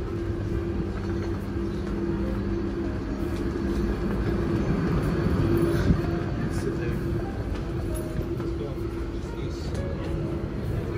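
Inside the carriage of an electric commuter train: a steady low rumble with a held electrical hum and one brief knock about six seconds in.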